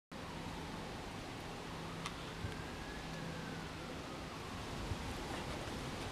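Steady background hiss with a faint low hum, a faint tone that slowly rises and falls in pitch through the middle, and one soft click about two seconds in.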